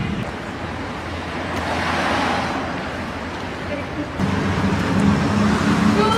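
Background road-traffic noise: a steady hiss over a low hum, swelling and fading about two seconds in, with a deeper hum coming in about four seconds in.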